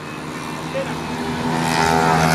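Racing motorcycle engine running at steady revs, growing louder as it approaches along the track.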